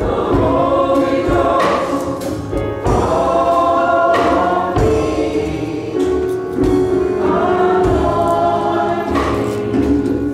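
Youth choir singing a gospel song in church, holding long sustained notes over a low instrumental accompaniment.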